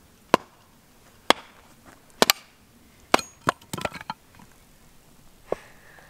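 Machete blade chopping into a stick of firewood on a chopping block, splitting kindling. Sharp strikes come roughly once a second, with a quick run of smaller knocks about four seconds in.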